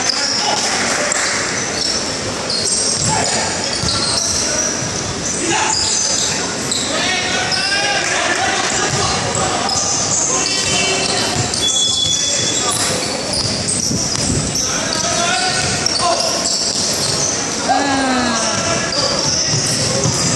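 Live basketball game in a gym: a basketball bouncing on the hardwood court as players dribble and run, with many short high-pitched sneaker squeaks. Spectators and players call out and talk throughout, the sound echoing in the large hall.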